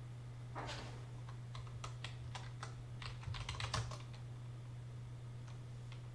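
Computer keyboard typing: a quick, uneven run of keystrokes through the first four seconds, then it stops.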